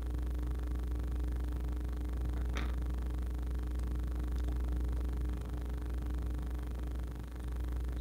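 Steady low hum of background noise, with one faint click about two and a half seconds in and a couple of fainter ticks a little later as small metal parts and tools are handled.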